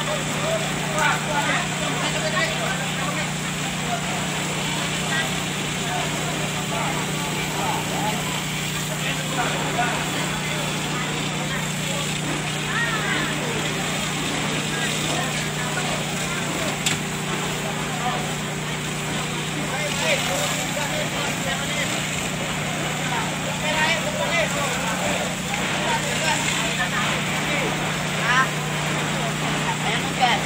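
An engine drones steadily at a constant pitch, the pump feeding the fire hoses, under the hiss of water jets hitting a burning house, with scattered voices from the crowd.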